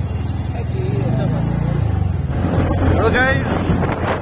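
Motor scooter engine running during a ride, a steady low hum that turns rougher about two seconds in, with a person's voice over it.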